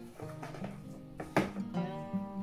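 Background music of strummed acoustic guitar with sustained notes. A brief sharp rustle comes about one and a half seconds in.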